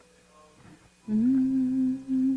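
A faint sustained keyboard chord, then about a second in a woman's voice hums one long, steady held note.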